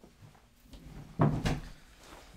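A door being shut, two heavy knocks about a third of a second apart a little over a second in.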